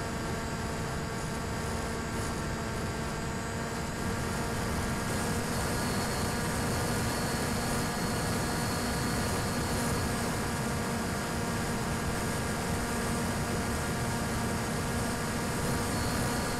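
Steady hum and whine of an RC plane's electric motor and propeller in flight, with wind rush, heard from the plane's onboard camera; it grows slightly louder about four seconds in.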